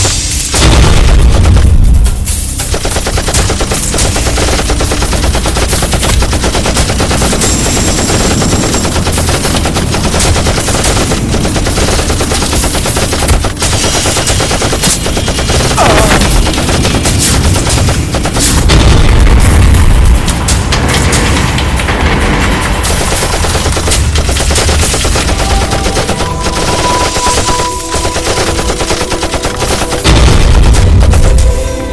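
Loud, sustained automatic rifle fire in dense, rapid bursts with hardly a break.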